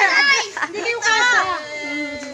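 Children's high-pitched voices shouting and calling out excitedly over one another, with short breaks between the shouts.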